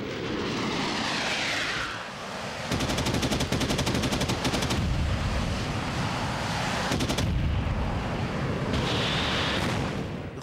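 Jet fighter aircraft sound effects: a jet passes with a falling whine, then a rapid burst of aircraft cannon fire, about ten rounds a second for some two seconds, with a short second burst later, over a continuous jet roar.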